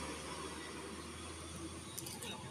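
Steady low engine hum under an even background hiss, with no distinct knocks or tool strikes.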